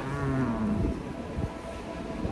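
A man's closed-mouth 'mmm' of enjoyment while chewing a mouthful of food: one hum, falling in pitch and lasting about a second, over low outdoor background noise.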